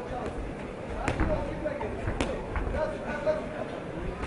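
Boxing gloves landing punches: two sharp smacks about a second apart, over the voices of the crowd and corners in the arena.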